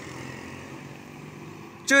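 Motorcycle traffic on the road: a steady low hum of small motorbike engines, with a man's voice breaking in at the very end.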